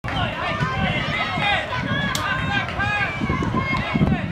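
Many voices talking at once, an overlapping chatter of players and sideline spectators with no single voice standing out, over a low rumble, and one short sharp click about two seconds in.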